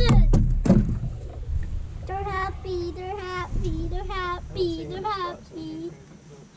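A child's voice sings a string of short, held notes, without words. Before it, in the first second, come a low rumble and a knock.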